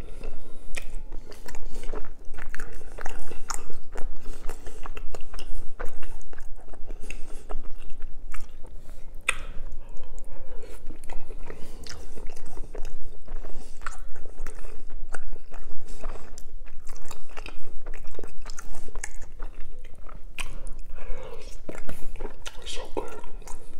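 Close-miked chewing and lip smacking of soft ravioli in tomato sauce, a steady run of small wet clicks.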